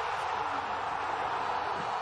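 Stadium crowd cheering steadily in a dense wash of noise, celebrating a goal, heard through a television match broadcast.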